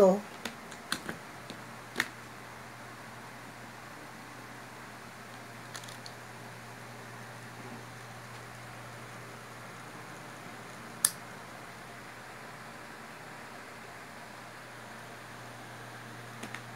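Washing-machine motor running with a steady low electrical hum. A few light clicks come in the first two seconds, and one sharp click about eleven seconds in.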